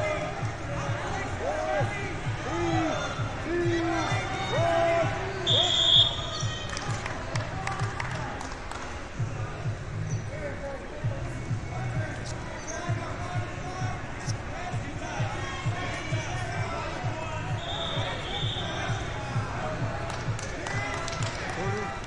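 Busy wrestling-tournament gym: dense, irregular thudding of bodies and feet on the mats, with scattered shouts and voices across the hall. A short, bright referee's whistle blast comes about five and a half seconds in, and a fainter one near eighteen seconds.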